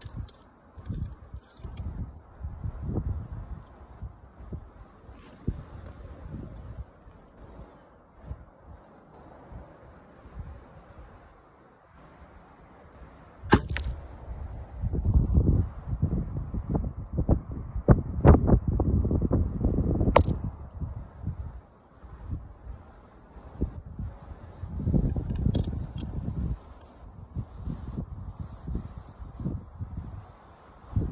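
Archery bow being shot: two sharp cracks of the bowstring releasing, the first about halfway through and the second about seven seconds later, amid low rumbling handling noise from the phone mounted on the bow.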